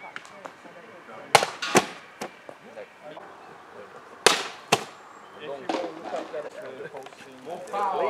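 Sharp cracks come in two groups, about a second and a half in and about four seconds in. The later pair is a sword blade slicing through a water-filled plastic bottle set on a post. Voices talk briefly after the cut.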